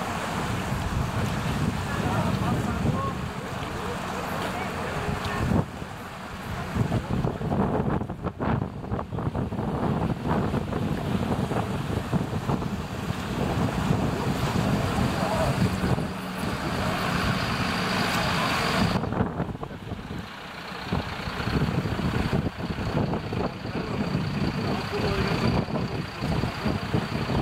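Fire engine running as it drives through floodwater, with the sloshing and splashing of the water around it and wind on the microphone.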